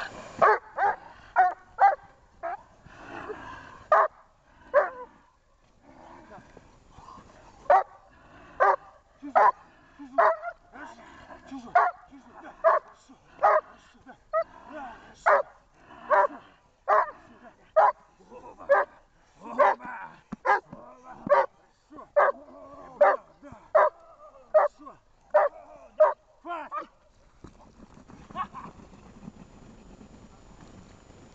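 Doberman barking in quick, steady succession, about one to two barks a second: guard barking at a helper in protection training. The barking stops a few seconds before the end.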